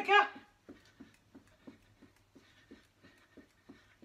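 Footfalls of trainers jogging on the spot on a carpeted floor, short soft thuds at about three a second.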